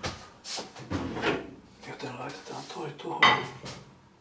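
Kitchenware being handled: a frying pan lifted and set on an electric hob, with separate knocks about half a second and a second in and a louder clatter a little past three seconds.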